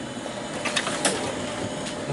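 A few light clicks and clinks of hand tools in a metal toolbox drawer, over a steady background noise.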